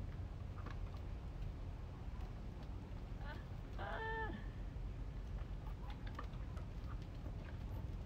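One short, high-pitched call about halfway through, lasting about half a second and dipping slightly in pitch at the end, over a steady low rumble and a few faint clicks.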